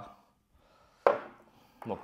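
One sharp knock about a second in, with a short ring after it: a glass perfume bottle set down on the tabletop.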